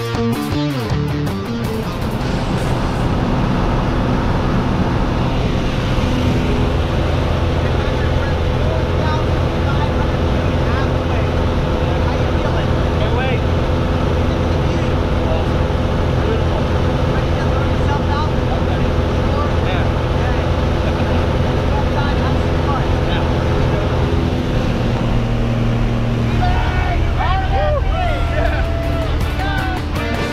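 Steady drone of a small propeller plane's engine heard inside the cabin during the climb, with voices raised over it at times. Rock guitar music plays for the first couple of seconds.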